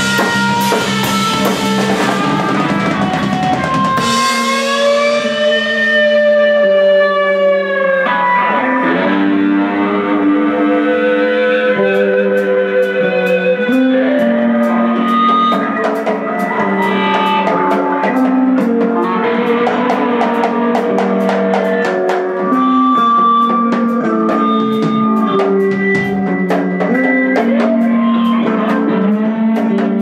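Live rock band playing: electric guitar, bass guitar and a Yamaha drum kit. A dense, loud wall of guitar and cymbals cuts off abruptly about four seconds in, giving way to a cleaner ringing guitar melody over a steady bass line. From about eight seconds, evenly spaced cymbal ticks keep time.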